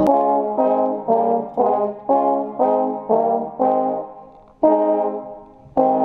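Trombones in a brass group playing a run of about eight short, accented chords, two a second, then two longer held chords near the end.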